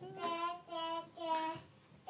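A toddler girl singing three short held notes one after another, with a brief pause between each.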